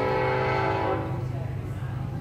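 A train's air horn sounding one long steady chord, swelling in and fading away after about a second and a half.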